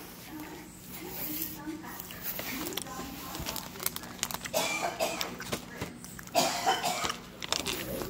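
Candy packaging and paper flyers rustling and crinkling as they are handled, in short crackly bursts with small clicks, the busiest stretches about halfway through and near the end.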